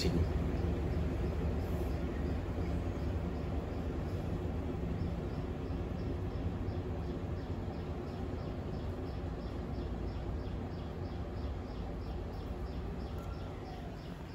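Hisense WTAR8011G 8 kg top-loading washing machine in its spin cycle: a steady, low motor and drum hum that is not loud. It slowly fades over the last few seconds as the spin winds down.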